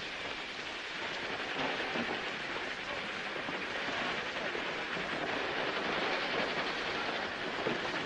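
Steady rushing background noise with no distinct events, rising slightly in level toward the end.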